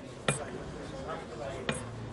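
Background murmur of café crowd voices, with a sharp clink of tableware about a quarter second in and a smaller one near the end.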